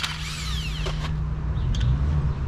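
Cordless impact wrench running as it undoes the bolts holding the clutch to the flywheel of a Toyota 1JZ engine.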